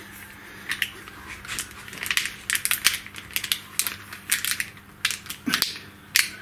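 Corrugated plastic cable conduit being flexed and handled, giving a run of irregular crackling clicks and rustles.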